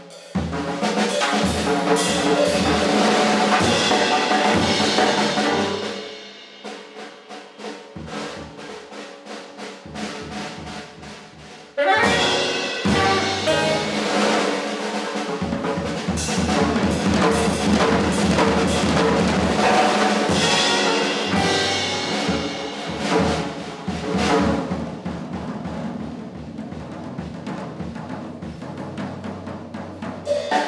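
Jazz quartet playing live: piano, tenor saxophone, double bass and drum kit. The band drops to a quieter passage about six seconds in, comes back in loud and suddenly at about twelve seconds, then eases off over the last ten seconds.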